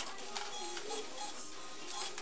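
Music playing, with short mechanical clicks and whirring from a shop till at the counter.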